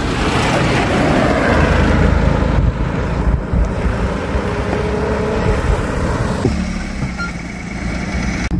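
Cars driving along a road towards and past the listener, engine and tyre noise that swells and then eases. About six and a half seconds in the sound changes suddenly to the steadier hum of a small car's engine running close by.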